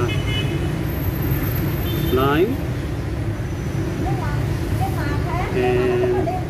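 Street traffic with a steady engine rumble, and short vehicle horn toots near the start and again just before the end.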